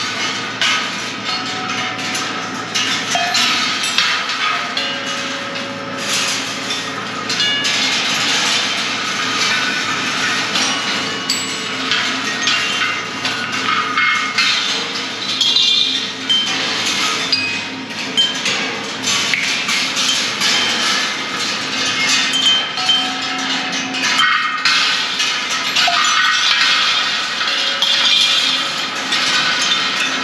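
George Rhoads' Electric Ball Circus, a rolling-ball kinetic sculpture, running: balls clatter and clink continuously along its wire tracks and strike its fittings, sounding short ringing notes at a few pitches, over a steady low hum.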